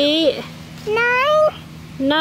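A high, sing-song voice drawing out single words: one word at the start, one rising in pitch about a second in, and another beginning just at the end.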